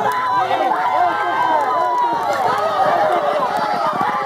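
Several voices shouting and calling out over one another without a break: spectators urging on horses in a race.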